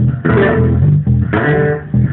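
Acoustic guitar being played, with low notes repeating in a steady rhythm. Two bright strummed chords ring out, one just after the start and one a little past halfway.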